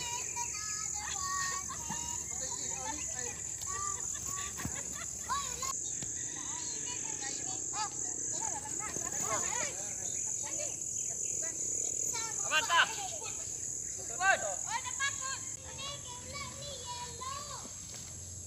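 Steady high-pitched drone of insects, with people's voices calling out intermittently over it.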